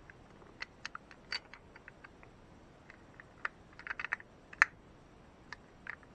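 Light clicks and taps of the metal and plastic parts of an Abu Garcia Cardinal C33 spinning reel being handled and fitted together. They come scattered, with a quick cluster about four seconds in and the sharpest click just after it.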